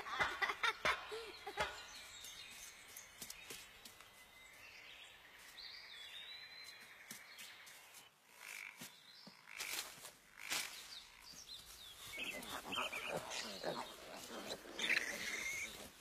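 Faint bamboo-forest ambience with an occasional high bird chirp, a few sharp clicks about ten seconds in, and soft rustling toward the end.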